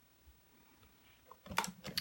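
A quiet stretch, then a few quick plastic clicks near the end as a clear acrylic stamp block is set down on the craft mat.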